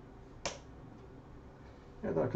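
A single sharp click about half a second in, over faint steady room noise.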